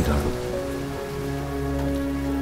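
Steady rain hiss under a soft, held chord of background music.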